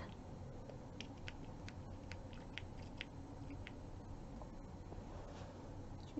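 Faint, scattered small clicks of thick, oily serum being rubbed over the hands, over a low steady hum.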